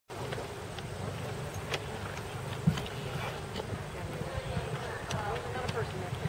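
Open-air ambience at an outdoor event: a steady low rumble with faint distant voices, most noticeable near the end, and a few scattered clicks, one sharper knock just before the middle.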